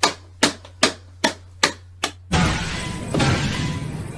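A stick repeatedly whacking an Elmo toy: six sharp hits at about two and a half a second. A little over two seconds in, these give way abruptly to a loud, dense rush of noise with faint steady tones.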